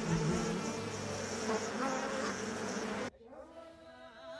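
A dense buzzing of night insects that cuts off abruptly about three seconds in.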